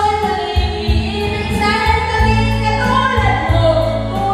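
A woman singing a slow melody into a microphone, holding long notes, over a backing track with a bass line and a steady beat.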